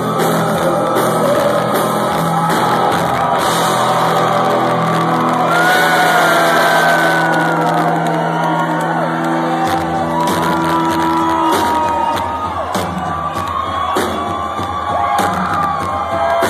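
Loud live rock band holding sustained, ringing chords with electric guitars and drums; the held low chord cuts off about eleven seconds in. The crowd shouts and whoops over it.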